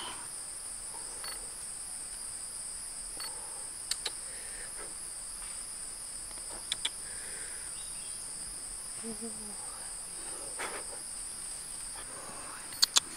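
Steady, shrill chorus of forest insects, with a few brief sharp clicks about four and seven seconds in.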